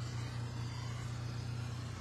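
Steady low hum with faint background hiss, without change.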